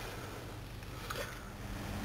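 Quiet room tone with a low steady hum and faint handling of a metal bracket against a camera body, with one small tick about a second in.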